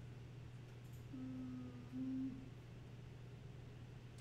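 A short two-note hum from a voice, each note held flat, about a second in, over a low steady background hum.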